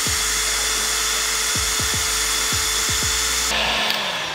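Electric heat gun blowing steadily with a loud hiss and a faint hum, shrinking adhesive heat-shrink tubing onto a crimped copper lug. The hiss drops away near the end.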